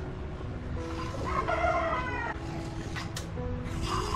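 A rooster crowing once for about a second, beginning a little over a second in, over soft background music with slow sustained notes. A couple of light clicks follow near the end.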